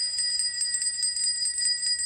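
A small bell rung rapidly and without a break, about eight strikes a second, to call for someone.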